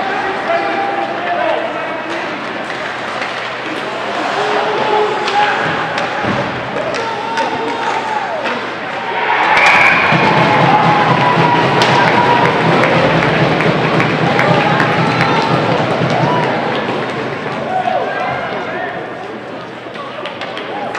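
Spectators talking in an ice hockey rink, with sharp knocks of pucks and sticks on the boards and ice. About halfway through, the crowd noise swells into cheering for several seconds as a goal is scored, with a brief high whistle-like tone at its start.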